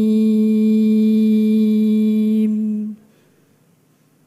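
A woman's voice in melodic Quran recitation (tilawah) holding one long, steady note at the end of a phrase, cutting off about three seconds in, followed by faint room tone.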